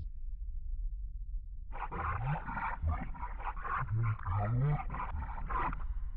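A low steady rumble, joined about two seconds in by a rough, growl-like roar with low rising swoops that lasts about four seconds and then stops.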